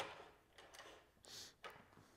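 Faint clicks and a brief scraping slide of the aluminium crosscut fence's bracket being fitted into the bench's track: a small click at the start, a short scrape about 1.4 s in, and a tiny click just after.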